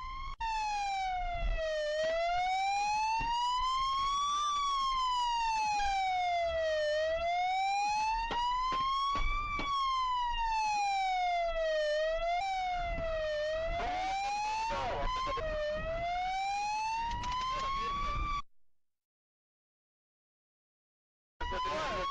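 Police car siren on a slow wail, rising and falling about every five seconds. It cuts off about three-quarters of the way through, leaving a few seconds of silence, then comes back just before the end.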